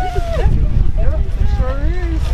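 Several people talking in a group, voices overlapping, over a steady low rumble.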